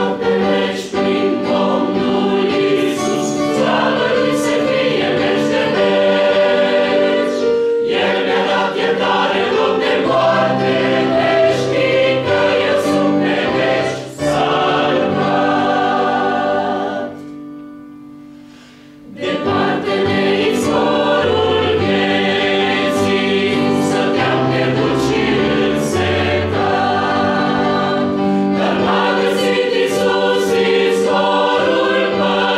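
A choir singing in several parts. The singing dies down about two-thirds of the way through and resumes about two seconds later.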